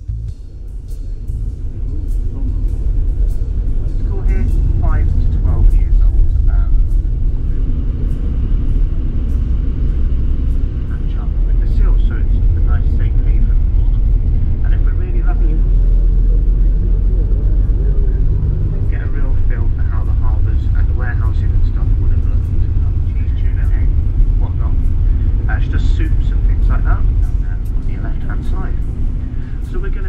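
Vehicle on the move: a heavy, steady low rumble of road and wind noise, with faint voices talking over it now and then.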